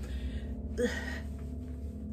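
A woman's short, breathy gasp about a second in, over a steady low hum.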